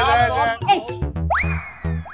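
Background music closing into a comic sound-effect sting: a few sharp drum beats, then two springy 'boing' glides that rise quickly and sink slowly, the second near the end.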